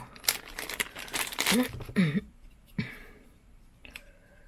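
Thin clear plastic bag crinkling as fingers work it open to take out a small lens cap. There is a flurry of crackles over the first two seconds, then quieter handling and a light click near the end.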